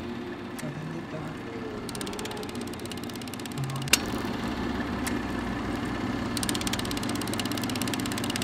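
Vintage reel film projector running as a sound effect: a steady mechanical whir with a very fast ticking rattle that comes and goes, and a single sharp click about four seconds in.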